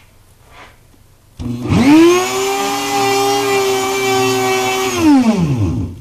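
A variable-speed rotary tool, used as a drive motor, spinning the rotor of a small generator. It starts about a second and a half in, whines up to speed within half a second, runs steady for about three seconds, then winds down and stops near the end.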